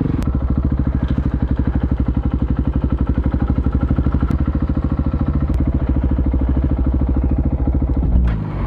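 Dual-sport motorcycle's engine idling at low speed with an even, rapid beat of firing pulses.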